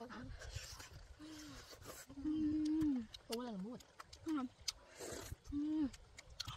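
A woman's wordless hums of enjoyment, "mmm" sounds, several short ones and one held for about a second, while she chews with wet mouth clicks and smacks.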